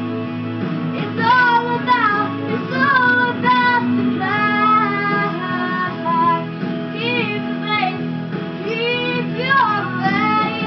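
A young female singer singing a ballad over instrumental accompaniment with held, sustained notes; the voice comes in about a second in after a brief instrumental stretch.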